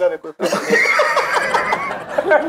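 Several men laughing together after a short pause, one voice high-pitched and drawn out over the others' short bursts of laughter.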